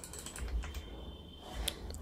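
Faint computer keyboard typing: a few light, scattered key clicks as a short heading is typed.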